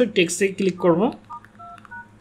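A man's voice briefly, then a quick series of short phone keypad touch-tone beeps, each at a different pitch, as digits of a phone number are keyed in.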